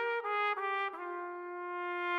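Solo trumpet playing three short separated notes, then settling on a long held lower note about a second in.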